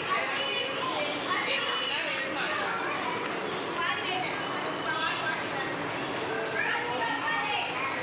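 A group of young children playing, many high voices chattering and calling out over one another without a break.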